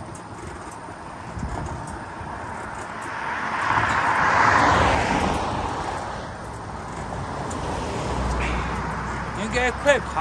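A car driving past, its road noise swelling to a peak about halfway through and then fading.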